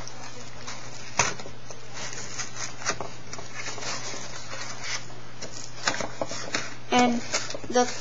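Scissors cutting into a moulded-pulp egg carton: scattered snips and crunches of the cardboard, the sharpest about a second in, over a steady low hum.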